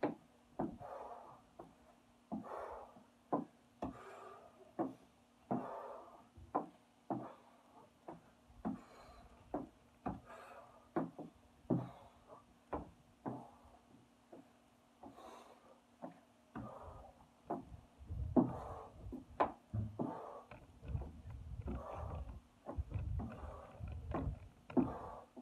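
A man breathing hard in rhythm with medicine-ball squat-and-press reps, a loud breath about every second and a half, with short knocks and thumps between them. It gets louder in the last third, over a faint steady hum.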